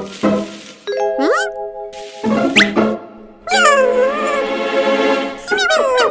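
Animated cartoon soundtrack of music and sound effects: swishing noise, held chime-like tones with rising whistle glides, and a long wavering wail in the middle. Near the end a cartoon character's babbling voice comes in.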